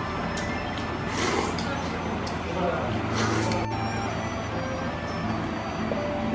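Background music with two short slurps of noodles, about a second in and about three seconds in.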